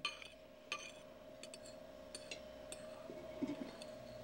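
Cutlery clinking against plates and dishes at a dinner table: several light, separate clicks, over a steady faint hum in the recording.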